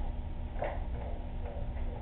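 Steady low background noise with a faint hum, and a few faint short ticks, the clearest about half a second in.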